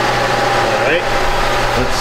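Chrysler Pacifica's 3.6-litre V6 idling, a steady hum with a constant tone.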